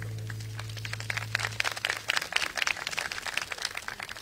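A low held note from the band's last chord dies away over the first two seconds, while scattered hand clapping from a small crowd carries on through the rest.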